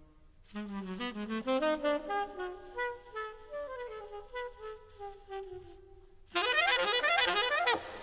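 Jazz big band playing live: a single horn runs alone through a fast, winding line of notes, then about six seconds in the full horn section comes in much louder with bending, shaking notes.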